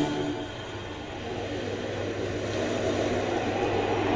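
A low, steady drone that slowly swells in loudness under a pause in the dialogue, likely a sustained note in the TV serial's background score.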